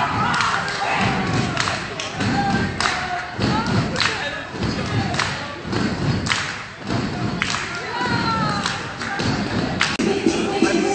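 Irregular thuds, about two a second, echoing in a large gym hall, with faint voices behind.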